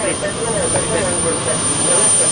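Indistinct voices talking over a steady rushing noise.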